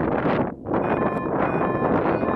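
Wind buffeting the microphone in gusts on an exposed hilltop. In the second half, two long electronic beeps sound faintly through the wind.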